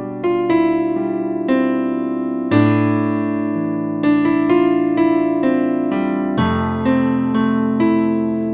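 Digital keyboard with an electric-piano tone playing a slow, held chord progression in C major with single melody notes struck on top. The chords move from G/B to a chord over an A bass about two and a half seconds in, then to F major 7 about six seconds in.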